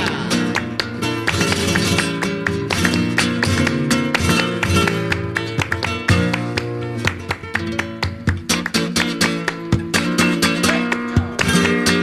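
Flamenco guitar playing bulerías: quick rhythmic strums and picked runs with many sharp, accented strokes.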